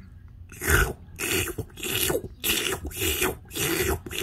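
A person's voice making nonsense creature noises for a sock puppet: a quick series of breathy, raspy bursts, about two a second.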